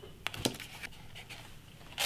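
Faint handling sounds of masking tape being laid and pressed onto a painted metal coffee mug: two light clicks in the first half-second, then soft scratching and rustling.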